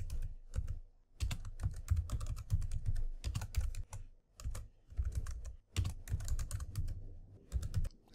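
Typing on a computer keyboard: quick runs of key clicks broken by brief pauses.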